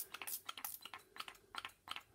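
Small hand-held plastic spray bottle pumped over and over, a quick irregular run of faint short spritzes and trigger clicks.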